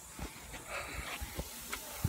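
Pork chops sizzling on a gas barbecue grill: a low, steady hiss with a few light knocks.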